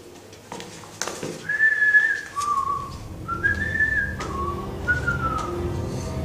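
Someone whistling a slow tune of about six clear held notes, stepping between a higher and a lower pitch, starting about a second and a half in.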